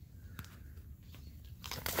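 Faint clicks and handling rustle, then near the end a sudden loud splash as a juvenile common merganser is let go into shallow creek water and thrashes off.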